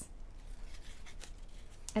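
Faint rustling of crepe paper being pressed by the fingers onto a glued wire leaf stem, with a few soft ticks about a second in.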